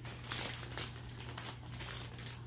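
Plastic produce bag crinkling and rustling as grapes are pulled off the bunch, irregular and loudest about half a second in.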